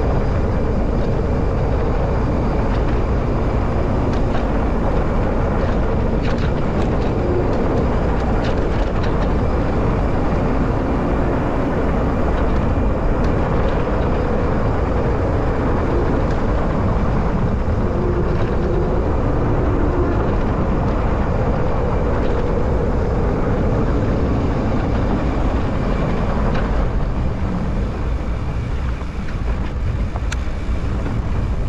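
Loud, steady rumble of wind on the microphone and the rolling noise of fat-bike tyres on a packed dirt road during a fast downhill run, with a few small ticks from grit and gravel.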